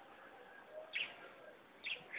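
Two faint, short, high chirps about a second apart, typical of a small bird calling in the background.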